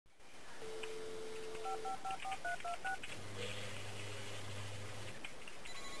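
Telephone line sounds: a dial tone, then a quick run of touch-tone keypad beeps as a number is dialed, then a low steady buzzing tone on the line for about two seconds. Near the end, a phone begins to ring.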